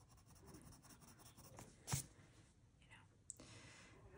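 Faint scratching of a colored pencil shading on coloring-book paper, with one short knock about two seconds in.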